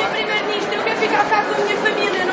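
Several young women's voices calling out over one another in overlapping chatter, protesting to the prime minister that they do not want to leave the country.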